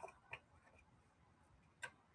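Near silence with two faint clicks about one and a half seconds apart, the second the sharper, as a phone wallet case is handled.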